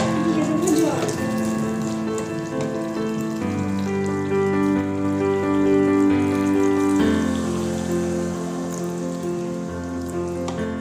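Chicken curry sizzling and bubbling in a steel pan as it is stirred with a wooden spatula, under background music of held chords that change twice.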